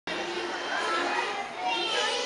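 A hubbub of many overlapping young children's voices chattering.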